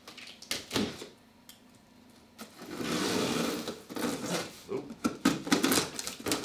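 Scissors slitting the packing tape along a cardboard box's seam: a scraping cut lasting about a second, then the cardboard flaps crackling and knocking as they are pulled open.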